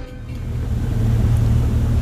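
Pontoon boat's outboard motor running: a low rumble that grows louder over the first second, then holds steady.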